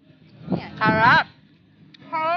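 A woman's close, drawn-out hum, an 'mmm' with her mouth full while eating a grilled meat skewer, its pitch rising and falling, about half a second in.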